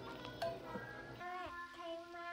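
A child's voice singing long held notes, with a single sharp click about half a second in.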